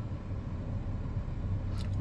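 The 2020 Nissan Versa's 1.6-litre four-cylinder engine idling in park: a steady low rumble heard inside the cabin.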